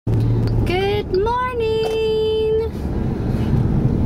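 Steady low road and engine rumble inside a moving car. About a second in, a voice holds one long drawn-out note for roughly a second.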